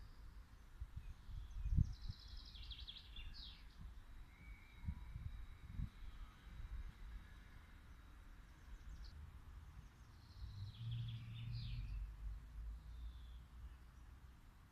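Outdoor ambience with small birds chirping in two short runs of rapid high notes, about two seconds in and again near the end, over a faint low rumble with a few dull thumps.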